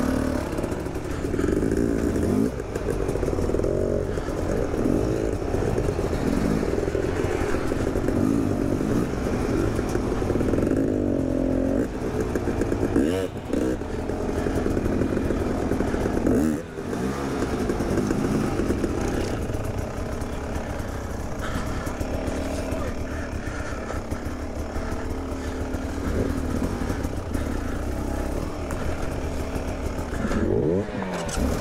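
Off-road dirt bike engines running at low speed, revving up and down over and over as they work through rocks, with a brief drop in loudness a little past halfway.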